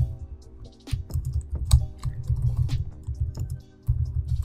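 Computer keyboard typing in quick, irregular key clicks over background music with a steady low beat and sustained tones.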